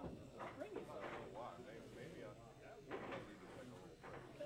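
Indistinct background chatter of people talking in a bar, with no clear ball strikes.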